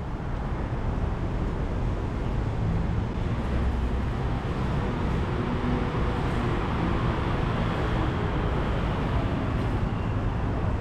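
Steady road traffic noise from cars and motorbikes running along a multi-lane city road, with a low engine hum under an even rush of tyres.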